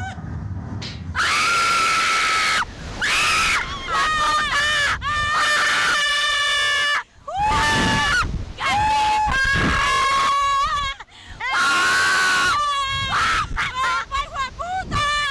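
Two women screaming on a catapult ride, a run of long, loud, high screams starting about a second in, each held for a second or so with short breaks between.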